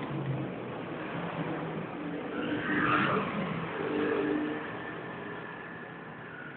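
Kawasaki KZ1000's air-cooled inline-four running on its sidestand, with the throttle blipped twice, about two and a half and four seconds in. It settles quieter toward the end.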